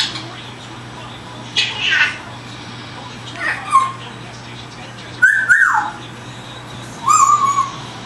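African grey parrot giving a series of four whistled calls, each gliding down in pitch, spaced a second or two apart.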